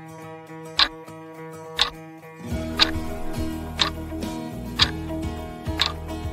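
Countdown clock ticking about once a second, six ticks, over light background music; the music fills out with a lower part about two and a half seconds in.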